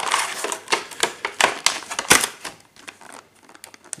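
Clear plastic blister packaging crinkling and crackling as it is handled, a dense run of sharp crackles that thins to a few light ticks after about two seconds.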